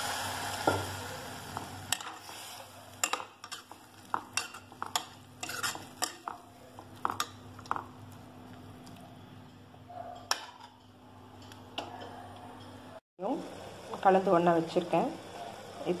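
A metal slotted spoon stirring vegetables and water in a cooking pot, knocking and scraping against the pot in a run of irregular sharp clicks. At the start a sizzle from the pot dies away over about two seconds.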